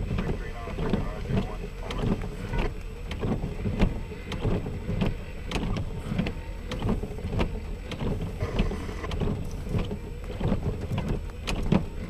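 Windshield wiper sweeping across a rain-wet windshield inside a car, with raindrops tapping on the car and a low steady hum from the idling engine.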